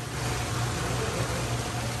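Steady hiss with a constant low hum: water circulating and pumps running in live seafood tanks.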